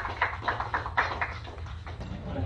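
A small group of people clapping, about four claps a second, dying away after a second and a half or so over steady low background noise.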